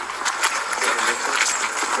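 Rustling and scuffing from a walking officer's body-worn camera rubbing against his uniform, with footsteps and faint muffled voices underneath.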